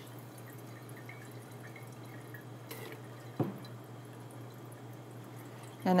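Liquid from a squeeze wash bottle rinsing through a coffee filter into a plastic petri dish, faintly trickling and dripping, over a steady low hum. A single sharp click comes about three and a half seconds in.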